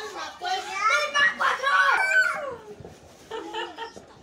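Young children's high-pitched voices talking and calling out, loudest in the first two seconds and quieter near the end.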